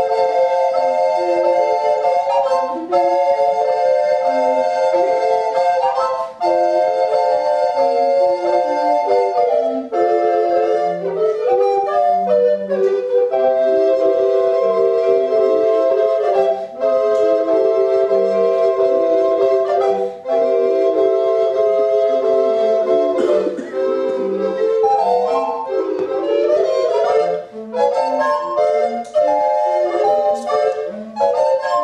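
Recorder ensemble playing a piece in several parts: held chords in the upper voices over a detached, bouncing bass line, with short breaks between phrases.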